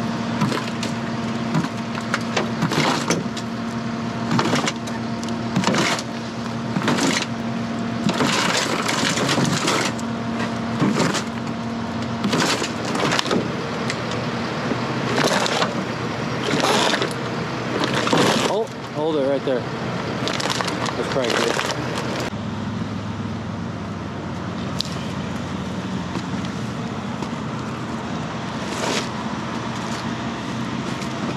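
Heavy diesel recovery equipment running steadily under a string of short cracks and crunches from the wrecked trailer and its debris. About two-thirds of the way through, the cracking stops and the engine note drops lower.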